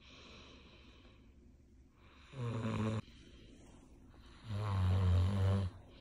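A man snoring in his sleep: two low snores, a short one about two seconds in and a longer one about four and a half seconds in.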